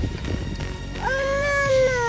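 Background music with a high-pitched voice holding one long call from about a second in, rising at first and then slowly falling.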